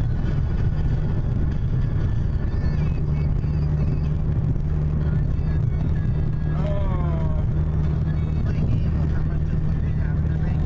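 Steady low rumble of engine and tyre noise inside a car cruising at highway speed.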